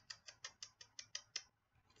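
A quick run of about nine short, sharp clicks, about six a second, that stops after a second and a half.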